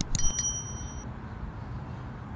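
A short bell-like chime, two quick dings in the first half second ringing out in clear high tones that fade within about a second. It matches a notification-bell sound effect, over low steady background noise.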